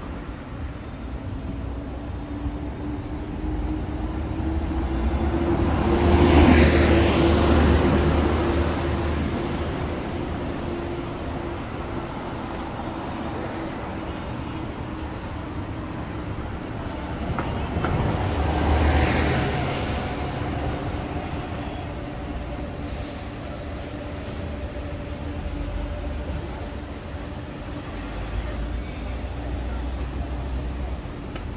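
City street traffic: a steady run of engine and tyre noise with a low hum, and two vehicles passing close by, the louder one about six seconds in and another around nineteen seconds, each swelling up and fading away.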